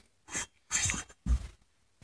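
Faint handling noises as a chainsaw cylinder is moved by hand: three short rustles in quick succession, the last with a soft low bump.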